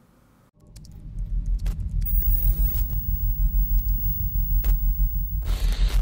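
Logo-ident sound design: a deep pulsing rumble that swells in about half a second in, with scattered crackling clicks and two bursts of static hiss, the second just before the end.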